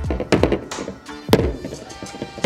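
A knife point striking a tempered-glass screen protector on a phone several times, sharp taps and thunks with the hardest strike a little past the middle, without breaking the glass. Background music plays underneath.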